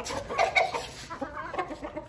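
Chickens clucking in a quick run of short calls.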